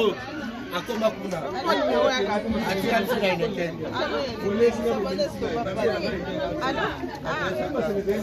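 Several people talking at once, their voices overlapping into steady chatter.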